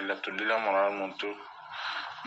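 Speech only: a man's voice talking, with a short pause about a second and a half in.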